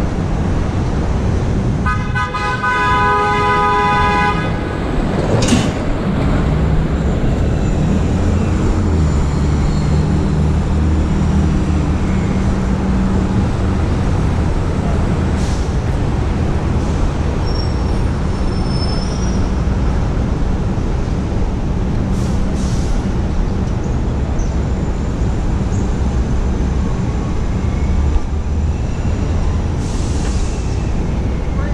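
City traffic noise, a steady low rumble of passing vehicles. A vehicle horn sounds once for about two seconds, a couple of seconds in.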